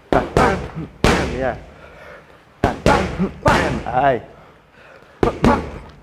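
Boxing gloves smacking focus mitts in quick punch combinations: about eight sharp smacks in three bunches of two or three, each bunch followed by a short shout from a fighter.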